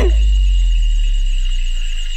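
A deep, steady low rumble, like a cinematic bass hit, that holds and slowly fades toward the end, over a constant high insect trill.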